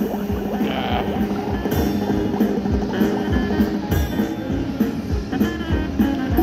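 Gold Fish slot machine playing its bonus-round music, a looping tune over a steady beat.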